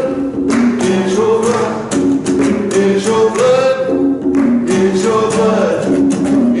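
A man singing a slow gospel song with his own strummed acoustic guitar.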